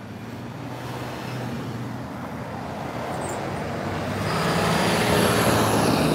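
Road traffic on a multi-lane street: a car approaches and passes close by, its tyre and engine noise growing steadily louder to a peak about five seconds in.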